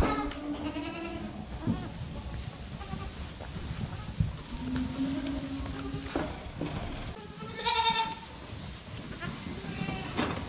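Recently weaned kid goats bleating, several calls in turn, the loudest just before eight seconds in. Their crying is typical of kids lately taken off the milk. A few knocks and a rumble come from the herd milling about.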